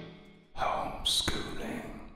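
A short, unclear human vocal sound starting about half a second in, with a sharp click partway through, fading out by the end.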